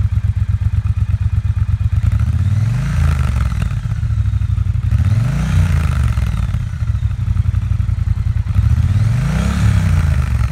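Triumph Bobber Black's 1200cc liquid-cooled parallel-twin engine idling, heard close to the muffler, then revved three times, each rev rising and falling back to idle.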